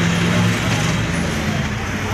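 Steady low engine hum amid street noise, with voices in the background.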